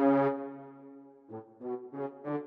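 Sampled orchestral French horns from the Miroslav Philharmonik 2 virtual instrument playing a preset staccato brass pattern. A held note fades out over about a second, then short, detached notes start up again.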